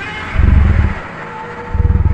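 Godzilla scream sound effect: a shrill, screeching roar that starts suddenly and slowly fades, over low rumbling bursts.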